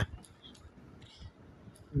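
A few faint, separate clicks from digits being tapped on a phone's touchscreen number keypad.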